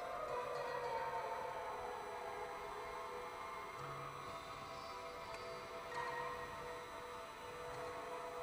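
Symphony orchestra playing quiet, sustained contemporary music: soft held tones in the middle range, with faint low notes coming and going and a brighter note entering about six seconds in.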